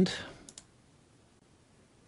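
Two quick computer mouse clicks in close succession about half a second in, then faint room tone.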